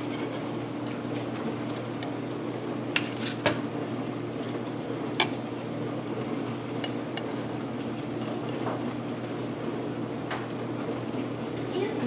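Knife slicing through a layered crepe cake, its blade clinking and tapping against the plate about half a dozen times, a few seconds apart, over a steady low hum.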